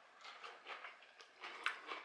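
Faint crunching of a mouthful of roasted spaghetti squash strands being chewed: a few soft irregular clicks, one sharper near the end. The crunch is the sign that the squash is cooked through but not overcooked or mushy.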